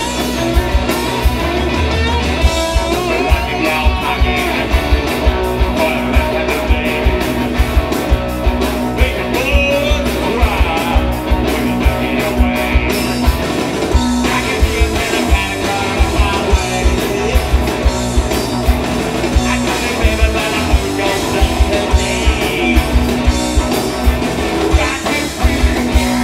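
Rock band playing live: distorted electric guitars, bass and a drum kit keeping a steady driving beat, with a male singer's vocals over the top.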